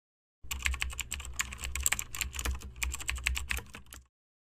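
Keyboard typing: rapid, irregular key clicks over a low hum, starting about half a second in.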